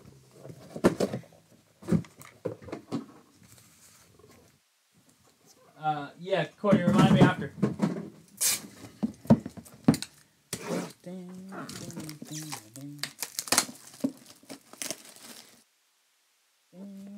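Cardboard trading-card boxes being handled: short taps, scrapes and rustles as a sealed hobby box is taken out of a case box and set down. Short stretches of a man's wordless voice come in between, the loudest about six to seven seconds in.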